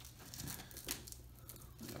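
Faint handling noise: a cheek rest's Velcro strap rustling under the fingers as it is worked loose, with one short click about a second in.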